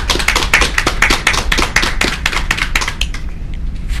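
A few people clapping, a brisk patter of separate hand claps that thins out over the last second or so.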